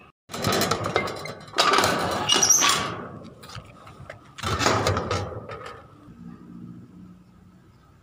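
Rusty iron gate being pushed open and shut, metal scraping and rattling in three long bursts, the loudest about two seconds in and the last about four and a half seconds in.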